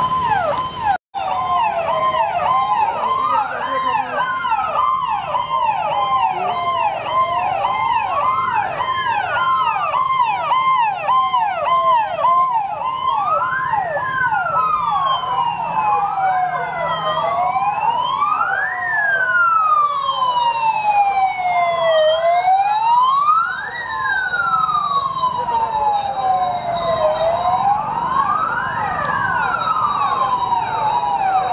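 Several police sirens sounding together, overlapping: fast repeated yelps alongside slower wails that rise and fall every couple of seconds. The sound drops out for a split second about a second in.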